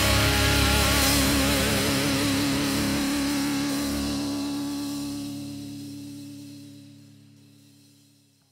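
Thrash metal band's final chord: distorted electric guitars and bass held with a wavering vibrato, ringing out and fading away to near silence over several seconds.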